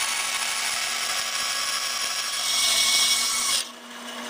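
Bandsaw blade cutting an eighth-inch-thick maple blank, a steady hissing saw cut that grows a little louder near the end and stops abruptly about three and a half seconds in, leaving only a faint steady hum.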